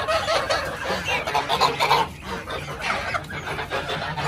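A crowd of young geese penned behind wire calling over one another, many voices at once, with a brief lull about two seconds in; the birds are shut in and eager to come out.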